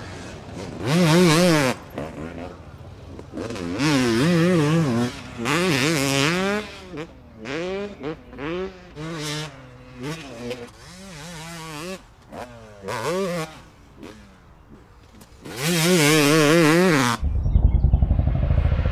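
Motocross dirt bike engine revving in repeated bursts, its pitch rising and falling as the rider works the throttle, with short lulls between. Near the end comes a loud burst with a deep low rumble.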